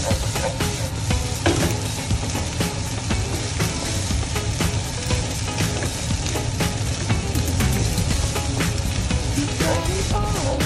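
Shrimp and egg fried rice sizzling in a hot pan while a wooden spatula stirs and tosses it, with frequent short clicks and scrapes of the spatula against the pan.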